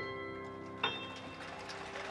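Grand piano playing the closing notes of a song: a chord struck right at the start rings on, and one more note is struck a little under a second in and left to fade.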